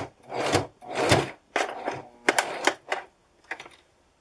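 Electric domestic sewing machine stitching in about five short start-stop bursts, each around half a second, as it sews a few stitches at a time over the end of an elastic ear loop.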